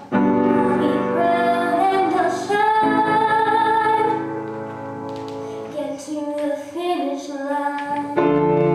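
A woman singing an original song, accompanying herself on an upright piano; the music eases softer for a couple of seconds mid-way before building again.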